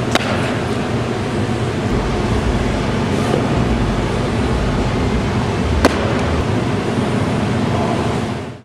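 Steady, fan-like hum of an indoor training facility's ventilation, with two sharp knocks about six seconds apart from softballs striking a catcher's gear during blocking drills.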